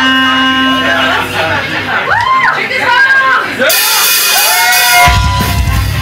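A live folk metal band starting a song: sustained droning tones, with whooping yells rising and falling over them. Cymbals come in at about four seconds, and the full band with drums, bass and distorted guitars crashes in about a second later.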